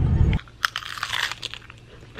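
A person biting and chewing a crunchy chip up close, a run of sharp, irregular crunches. It begins about half a second in, when a low car-cabin rumble cuts off suddenly.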